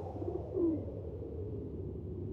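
Tail of a Dolby logo trailer's soundtrack: a low sustained drone with a short low pitched sound, like a bird's call, gliding down about half a second in.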